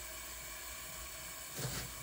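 Faint, steady sizzle of crumbled pork sausage frying on medium-low in a lidded pan. A short soft burst of noise comes near the end.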